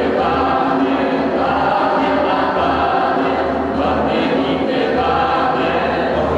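A small group of voices singing together in sustained notes over a steady low drone, in a large stone church.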